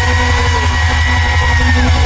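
Live rock band playing loud through a PA, with heavy bass and drums. A single high note is held and slides down just before the end.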